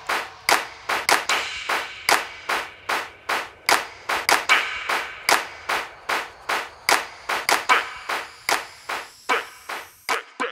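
A trap track's bare percussion break: sharp electronic clap-like hits with a short reverb tail, about three a second in an uneven, stuttering rhythm, with the bass and melody dropped out.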